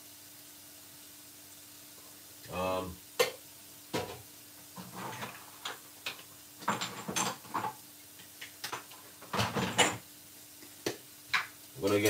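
Scattered light clicks and knocks of kitchen items being handled, with a few short murmurs of a man's voice and a faint steady hum underneath.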